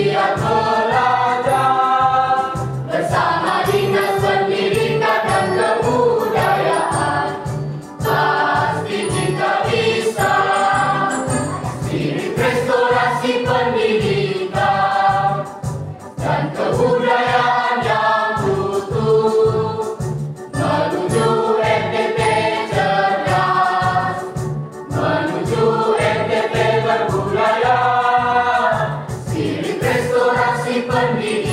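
A mixed choir of young male and female voices singing together, phrase after phrase with short breaks between, over a steady low rhythmic pulse.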